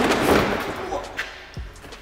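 Plastic front bumper cover of a Mk6 VW Golf being pulled free: a sudden loud crack and scrape of plastic at the start, then a sharp click and a low knock.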